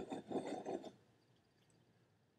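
Red wine swirled in a wine glass: faint, short sloshing sounds for about the first second, then near silence as the glass is raised to sip.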